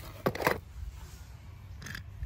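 Metal die-cast toy cars clicking against each other as one is picked out of a cardboard box: a short clatter about a quarter second in and a fainter click near the end, over a low rumble of handling noise.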